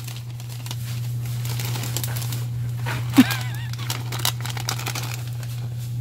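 Plastic snack bags crinkling and rustling as one is pulled off a store shelf, over a steady low hum. A single short honk-like voice sound comes about three seconds in.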